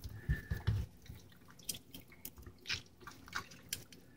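A large kitchen knife cutting into the thick skin and flesh of a northern pike behind the head. It makes faint, irregular crunching and small clicks, with a few soft thumps in the first second.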